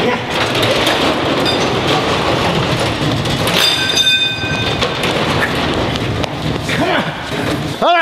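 Metal roll-up warehouse door clattering loudly as it is raised, with a brief high screech about four seconds in.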